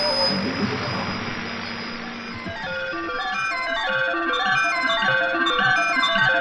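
Electronic music made from shortwave radio sounds. A wash of hiss fades away over the first couple of seconds, giving way to a dense, quickening patter of short, high pitched tones.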